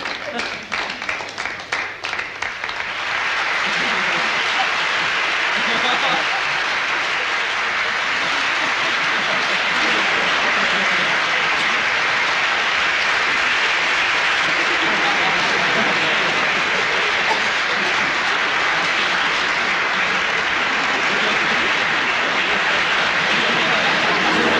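Audience applause: scattered claps at first that build within about three seconds into steady, sustained clapping.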